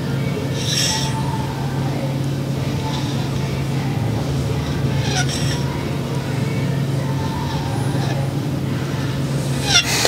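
A steady low hum, with two brief scraping hisses, one about a second in and one about five seconds in.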